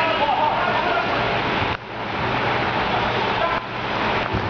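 Indoor soccer hall ambience: a steady loud din with distant shouting voices, dipping sharply just under two seconds in before building back.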